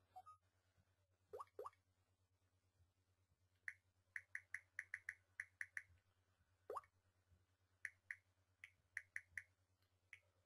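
Faint electronic tones from a smartphone. Two short rising bloops come a little over a second in, then a run of short high pings about five a second, another rising bloop, and more scattered pings near the end.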